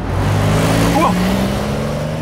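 Sound effect of a car speeding past: a sudden loud rush of noise over a steady engine note, lasting about two seconds before it starts to fade.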